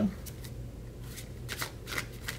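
Tarot deck being shuffled by hand: several short, separate flicks of the cards.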